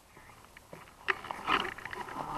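A man breathing hard and grunting, out of breath from exertion, with a few sharp clicks and knocks about a second in.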